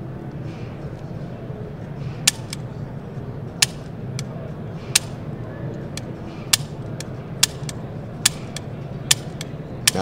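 Dry-fire trigger clicks from a double-action pistol during a ten-shot practice string, about eight sharp clicks roughly a second apart, most followed by a lighter click, over a steady background hubbub.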